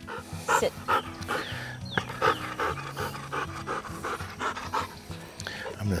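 Labrador retriever panting quickly and evenly, about two to three breaths a second, winded after running a retrieve.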